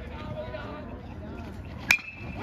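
Metal baseball bat striking a pitched ball near the end, one sharp ping with a brief high ring after it: a squarely struck ball that carried over the centre-field fence for a home run.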